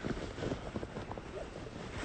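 Irregular soft rustles and clicks over a low, steady hiss and rumble: handling noise from a phone being held and moved, with wind on its microphone.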